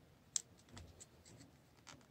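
Quiet handling sounds of fingers threading a wrist-strap loop onto the Kodak PixPro SL10 smart lens camera body: small scratches and light clicks, with one sharp click about a third of a second in.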